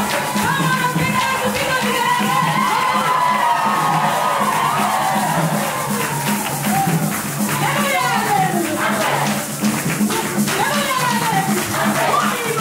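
Upbeat congregational worship song: a woman's amplified voice leads the singing with the congregation joining in, over a steady, even beat of bass and hand percussion.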